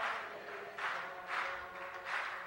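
A pause in a woman's unaccompanied singing into a handheld microphone: three short, soft breathy sounds about half a second apart, close to the microphone.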